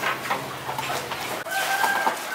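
A rooster crowing, one long held call starting about three-quarters of the way through, over water splashing in a scalding pot.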